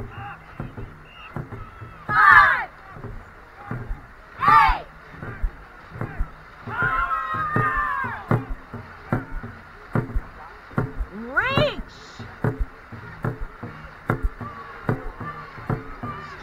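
Dragon boat crew racing: a quick, steady rhythm of short knocks from the race stroke over rushing water. Loud shouted calls come every few seconds, one longer one near the middle.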